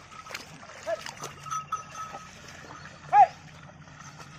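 Bullocks' hooves and the cart's wheels splashing through flooded paddy mud, with two short, sharp calls, the louder one near the end.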